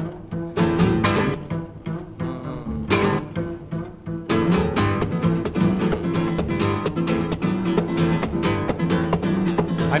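Acoustic guitar instrumental break in a lively porro rhythm, plucked and strummed; the strumming becomes denser and brighter about four seconds in.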